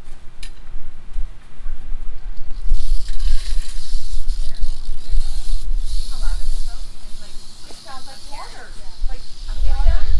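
Prairie rattlesnake rattling its tail: a steady high-pitched buzz that starts about three seconds in and keeps going, the warning of a disturbed snake.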